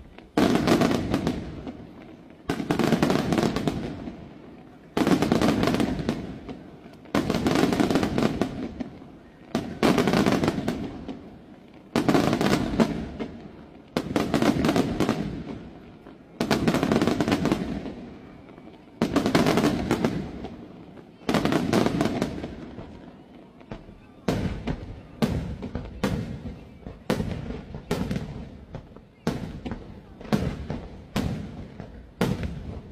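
Aerial firework shells bursting about every two seconds, each a sharp bang followed by a crackling, rumbling tail that fades away. Near the end the bursts come faster, more than one a second.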